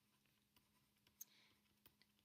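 Near silence with a few faint clicks of a stylus tapping on a tablet screen during handwriting, over a faint steady hum.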